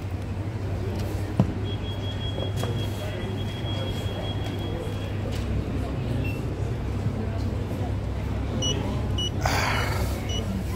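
Ingenico card payment terminal giving a series of short high beeps near the end, after the payment is accepted: the signal to take out the card. A steady low hum of the shop runs underneath, and there is a brief rasping burst just before the end.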